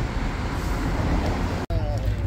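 Street traffic noise, a steady low rumble of passing road vehicles, with faint voices mixed in. It cuts out for an instant near the end.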